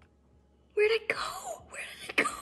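A young woman's wordless wailing cry of overwhelming emotion, starting about three quarters of a second in: a briefly held note that slides down in pitch, then breaks into breathy, shaky pieces.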